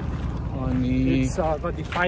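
Speech, with steady wind rumble on the microphone underneath.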